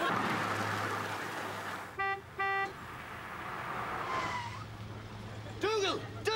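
Milk float's horn beeping twice in quick succession, over a steady low hum. A man starts speaking near the end.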